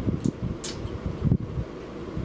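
Electric fan running close to the microphone, an uneven low noise of moving air, with a couple of brief faint hisses.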